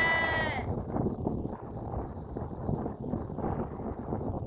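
A lamb bleating once, a single held call at the very start, then steady wind rumble on the microphone.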